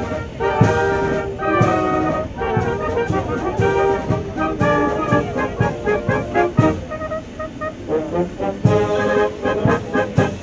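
Bavarian brass band playing a lively march-style tune with trumpets, trombones and saxophone over a steady beat of about two a second.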